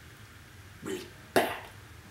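A man's brief throat sound in two parts: a soft one about a second in, then a sharper, cough-like one half a second later.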